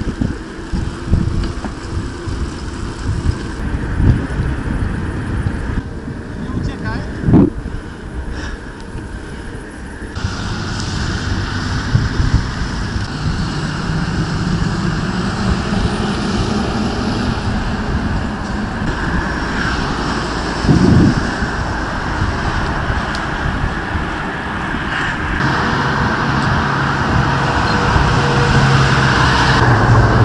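Wind buffeting the microphone of a bicycle-mounted camera while riding, with a few knocks, then steady road traffic: engine hum and tyre noise of passing cars and a truck, growing louder toward the end.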